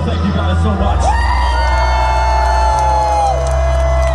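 Live deathcore band holding a heavy closing sound with a steady low bass drone, as fans near the microphone cheer with two long held whoops that start about a second in.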